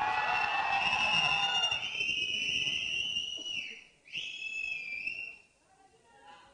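Audience cheering and screaming with a loud human whistle held over it. The whistle holds for about three and a half seconds and dips in pitch, then comes again more briefly and falls away. The cheering fades after about two seconds.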